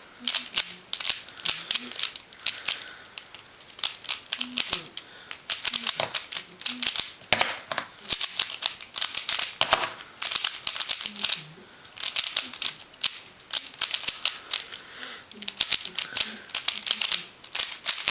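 QiYi Thunderclap v1 3x3 speedcube being turned rapidly one-handed: quick runs of plastic clicking and clacking, broken by short pauses every few seconds.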